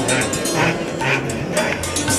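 A tall stringed instrument struck with a pair of beaters: a quick run of taps, about five or six a second, over low ringing notes that step from one pitch to another.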